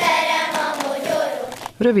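A children's choir singing together in unison, cut off shortly before the end.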